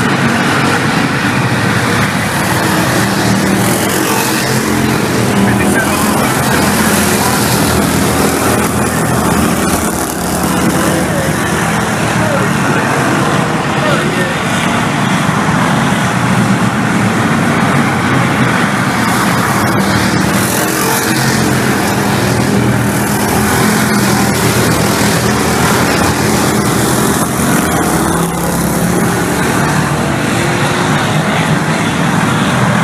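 A pack of bomber-class stock cars racing around an oval track, their engines running at speed in a steady, loud drone. People's voices are heard over it.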